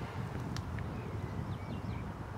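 Outdoor rural ambience: a steady low rumble with a few faint, short bird chirps and a small click about half a second in.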